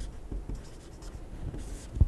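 Marker pen writing on paper in short, soft scratching strokes. Near the end comes one longer, brighter scratch as a line is drawn under the word.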